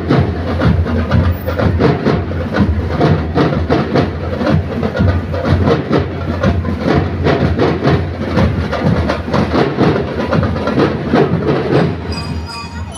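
Parade marching drums beating a fast, steady rhythm.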